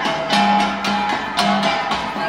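Cordillera gangsa, flat bronze gongs, beaten in a steady repeating pattern of ringing metallic strikes, with a lower, deeper gong note coming back every half second or so.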